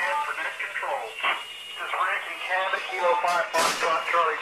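A voice speaking over a two-way radio on a Skywarn weather-spotter net, with a brief burst of noise near the end.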